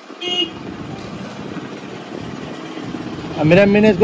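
A short horn toot about a quarter second in, over steady street-traffic noise; a man's voice starts near the end.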